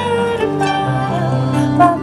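Concert harp being plucked, a slow line of single notes that ring on over one another above a held low bass note.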